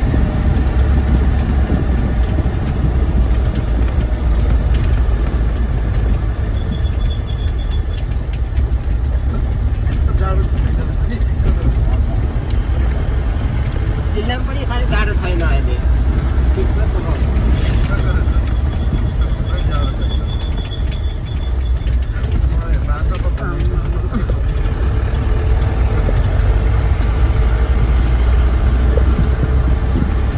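Engine and road noise of a moving vehicle heard from inside its cabin: a steady low rumble. Voices can be heard faintly partway through.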